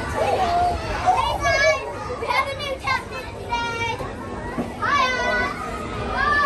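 High-pitched children's voices calling and squealing in a handful of short cries, over the steady noise of children playing.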